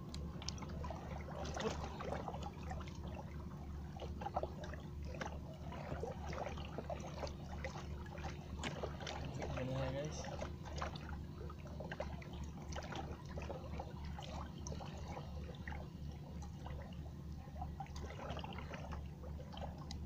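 A steady low motor hum that throbs evenly, with water splashing and trickling and scattered light knocks and clatter. Faint voices come through now and then.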